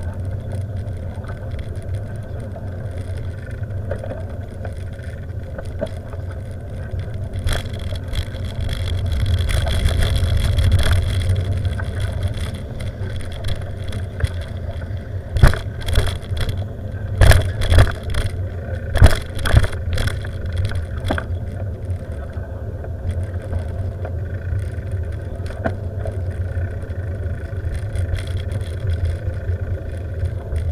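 Steady low rumble of a moving vehicle travelling along a road. Partway through, a run of sharp jolts and thumps as the wheels bump over the rails of a railway level crossing.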